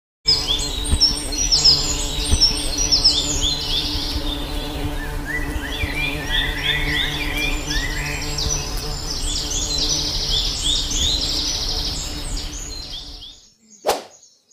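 Honeybees buzzing with a steady hum under a dense chorus of birds chirping quickly, fading out near the end and followed by a brief click.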